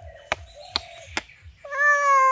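A toddler's long, high-pitched vocal cry starting near the end and slowly falling in pitch, after a few sharp clicks.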